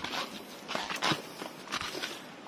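Footsteps on a dirt forest trail, a scuffing, crunching step about once a second over soil and dry leaves.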